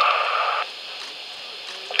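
Hiss of an open radio channel carrying the launch countdown commentary, with a faint steady tone, cutting off about half a second in and leaving a fainter hiss.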